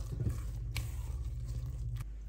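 Silicone spatula stirring thick carrot cake batter in a stainless steel mixing bowl: soft scraping against the bowl with a few light knocks, over a steady low hum.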